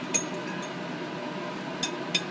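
Metal forceps and scalpel clinking against a plate: one sharp clink with a short ring just after the start, then a couple of fainter ticks near the end, over a steady background hum.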